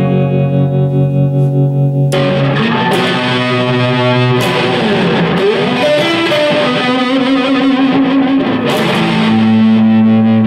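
Distorted electric guitar played through a PRS MT15 valve amplifier head at 7.5 watts into 12-inch Celestion speaker cabinets: a held chord that pulses for about two seconds, then single-note lead lines with string bends, ending on a long sustained note.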